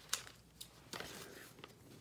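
A sharp click just after the start, then a few fainter ticks: a sheet of foam adhesive dimensionals being picked up and handled.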